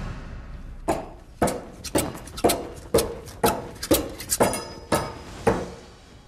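Ten throwing knives striking an impalement board in rapid succession, one sharp impact about every half second, from about a second in to near the end.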